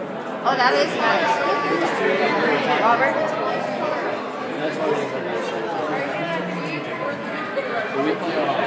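Indistinct chatter of several people talking at once, with no single voice clear.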